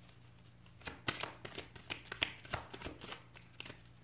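Oracle cards being shuffled by hand, a quick irregular run of light card clicks and slaps starting about a second in and stopping just before the end.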